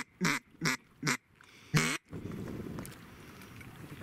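A run of loud duck quacks, about two and a half a second, each dropping in pitch, that stops about halfway through; a soft hiss follows.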